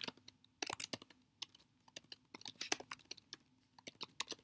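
Laptop keyboard typing: irregular bursts of quick keystrokes as HTML tags are entered in a code editor.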